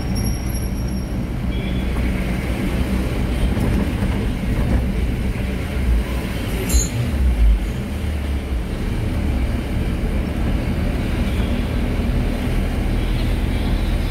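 Steady low engine and road rumble inside a moving tempo van, with a few heavier low thumps about six to seven and a half seconds in.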